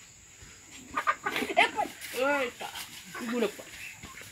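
Short voiced exclamations from men, mixed with a hen held upside down by its feet clucking and squawking in a few short calls after about a second of quiet.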